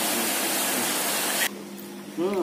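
A steady, even hiss that cuts off abruptly about one and a half seconds in, leaving only a faint low hum.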